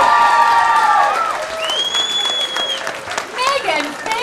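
Audience applauding at the end of a song, with the last held note dying away about a second in. A single long whistle sounds in the middle, and voices come in near the end.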